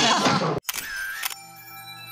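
Channel outro sting: a short burst of noise with a brief tone, then a cluster of bell-like chime tones that ring on and slowly fade.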